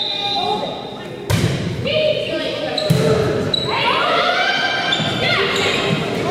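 A volleyball being struck, indoors on a gym court. A referee's whistle carries on until about a second in, then a sharp smack of the serve is heard, and a second hit follows about a second and a half later. After that, players and spectators shout and call out as the rally goes on, with the sound echoing around the hall.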